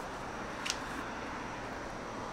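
A single sharp snap as an Innova Halo Destroyer disc golf driver rips out of the thrower's hand on a hard drive, heard over a steady background hiss.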